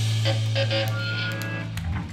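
Hardcore punk band playing live: the chopping guitar chords stop and the last chord rings out on electric guitar and bass guitar, a held low bass note that cuts off near the end as the song finishes.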